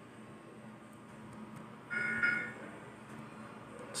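Quiet room tone, broken about two seconds in by one short, high electronic chime of a few steady tones lasting about half a second.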